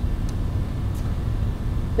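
Steady low rumble of room noise during a pause in speech, with a couple of faint ticks.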